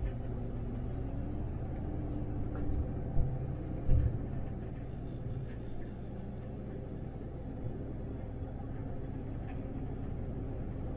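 Interior drive noise in the cab of an 18-metre MAN Lion's City articulated city bus on the move: a steady low rumble of drivetrain and tyres. There is a short low thump about three seconds in and a louder one about four seconds in.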